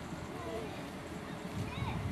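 Outdoor ambience by open water: a steady low rumble, with two faint short calls that rise and fall in pitch, about half a second in and again near the end.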